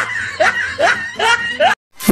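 A laughter sound effect: a person snickering in short bursts, about two a second, each rising in pitch. It cuts off abruptly near the end.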